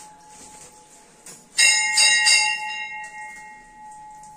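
A metal temple bell rung three times in quick succession about a second and a half in, its bright ringing tones dying away within about a second.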